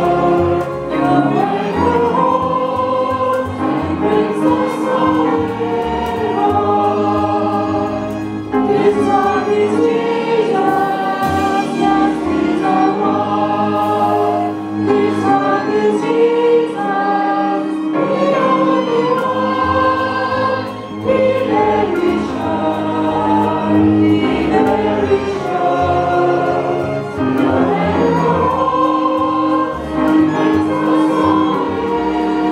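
A hymn played by a small ensemble of clarinet, violins and cellos, with a choir of voices singing along.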